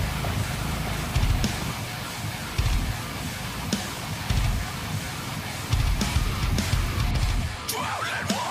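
Background rock music with guitar and drums.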